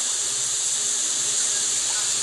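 A steady, high-pitched hiss at an even level.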